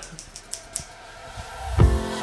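A few light snips of scissors cutting hair, then background music comes in near the end with a deep bass hit and a held chord.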